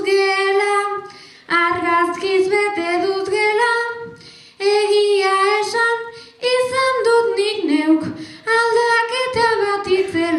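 A girl singing Basque verses (bertsoak) solo and unaccompanied, in sustained phrases separated by short pauses.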